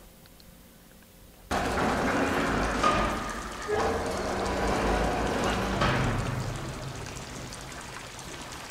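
TV drama soundtrack: steady falling-water ambience with a low rumble, starting abruptly about a second and a half in after a very quiet moment, and easing off a little toward the end.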